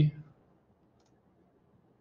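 Two faint computer mouse clicks about a second apart, after the tail of a spoken word.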